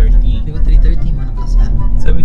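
Steady low rumble of a car's engine and road noise heard from inside the cabin, with people talking quietly over it.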